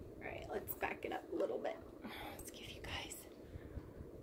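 A woman whispering softly in short phrases.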